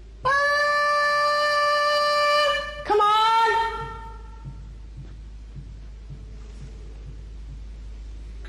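A woman's voice holding a long, high, steady "ahhh" for about two and a half seconds, then a second, lower "ahhh" that fades out about four seconds in. It is a call for a presence to copy the sound. The rest is a quiet room with a few faint ticks.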